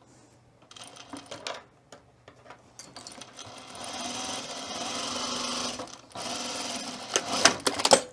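Juki industrial sewing machine stitching through layered fabric in two short runs. The first starts about three seconds in and lasts about three seconds; the second follows straight after, preceded by a few light handling clicks.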